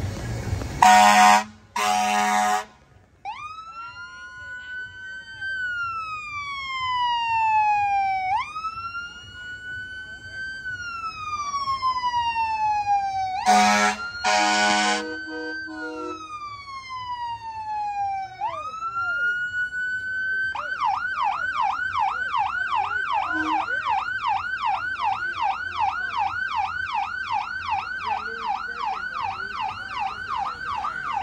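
Emergency vehicle siren in a slow rising-and-falling wail, about one cycle every five seconds. Two short horn blasts come near the start and two more midway. About two-thirds of the way in, the siren switches to a fast yelp of about three sweeps a second.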